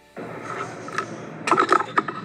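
Close-up handling noise: rustling and scraping with several sharp clicks as wires and plastic crimp connectors are handled right by the microphone, starting abruptly just after the beginning and loudest in a cluster of clicks near the end.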